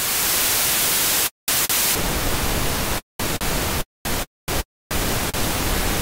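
Hive software synthesizer's oscillator set to its white noise generator, playing a hissing note that covers every pitch. About two seconds in it switches to pink noise, which has less treble hiss, played as several shorter notes that start and stop abruptly.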